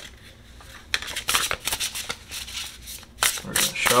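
A deck of oracle cards being shuffled by hand: a run of quick papery rasps that starts about a second in.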